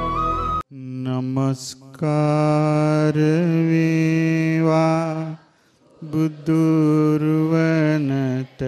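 Intro music cuts off just under a second in. A Buddhist monk's solo male voice then chants into a microphone in long, drawn-out held notes, phrase by phrase, with short pauses for breath.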